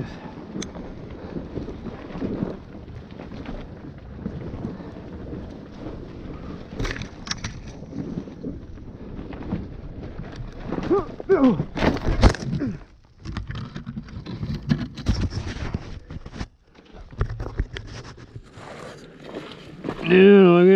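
Helmet-camera sound of a dirt bike riding down a steep, rocky single-track trail: uneven engine and tyre noise with knocks from the rocks. The noise drops away briefly a couple of times in the second half.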